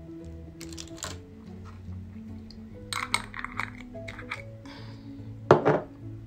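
Wooden stirring sticks clinking and tapping against a small glass beaker, with a few light clicks about a second in, a quick cluster about halfway through and a louder knock near the end, over soft background music.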